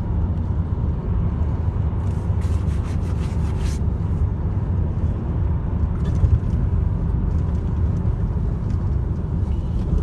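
Steady low rumble of a car's engine and tyres heard from inside the cabin while driving along a road, with a few brief high crackles about two to four seconds in.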